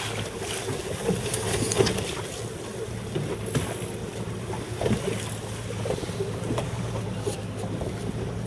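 Outboard motor of an inflatable boat running at a steady hum, with wind on the microphone and a few sharp knocks of water against the hull.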